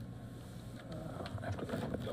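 A low steady hum with muffled noise, with a faint indistinct voice in the second half.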